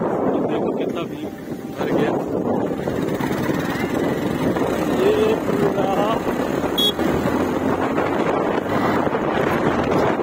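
Wind rushing over the microphone of a moving motorcycle, with the engine running underneath. The rush dips briefly about a second in.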